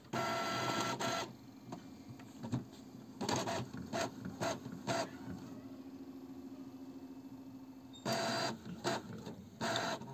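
Epson L6270 ink-tank inkjet all-in-one printer making a photocopy. There is a second-long stretch of motor whirring at the start, then a series of short mechanical whirs and clicks with a faint steady hum between them, and another burst of whirring and clicks near the end as the printed page feeds out.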